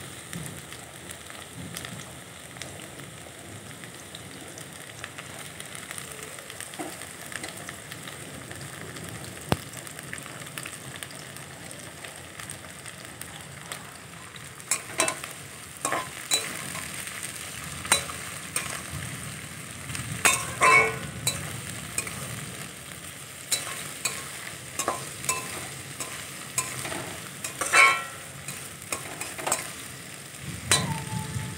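Potatoes and sliced onions frying in oil in a steel kadai, with a steady sizzle. From about halfway through, a metal spatula stirs and scrapes against the pan, giving sharp clinks.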